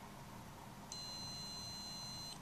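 A digital multimeter's continuity beeper sounds a steady high-pitched tone, starting about a second in and held, as its probes touch two matching blue terminal posts. The tone signals an unbroken connection between them.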